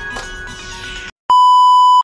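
A loud electronic bleep: one flat, steady tone lasting under a second, cutting in suddenly just over a second in after a moment of dead silence. Before it, faint background music trails off.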